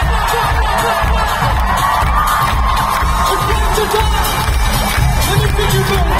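Live pop music over an arena sound system with a steady pulsing bass beat, and a crowd cheering and shouting over it, heard from within the audience.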